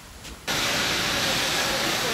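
Steady loud hiss of firefighting water spray and steam on a burning waste pile, starting abruptly about half a second in.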